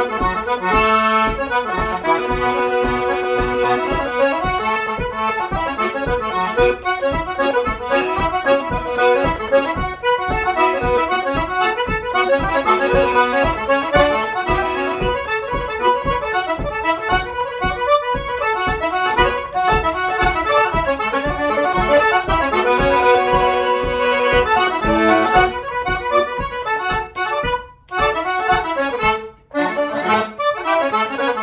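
Six-voice single-row diatonic button accordion in D, modified with one extra C button, playing a traditional tune: a melody over a steady, rhythmic bass-and-chord accompaniment. There are two brief breaks in the sound near the end.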